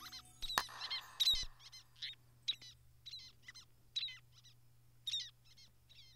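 Many short, high chirps like bird calls, two or three a second and spaced irregularly, over a faint low hum. A sharp click and a brief rustle come about half a second in.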